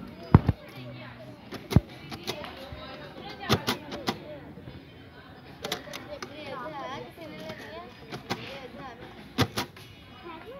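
Background chatter of voices, broken by several sharp knocks or clicks scattered through. The loudest knock comes just after the start and another near two seconds in.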